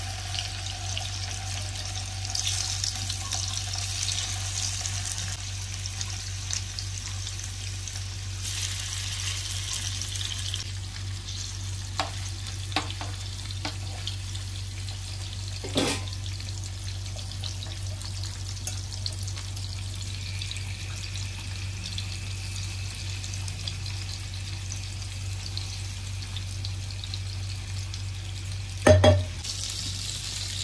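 Small whole river fish shallow-frying in hot oil in a nonstick frying pan, a steady sizzle over a low hum. A few light clicks come midway, and a louder knock near the end.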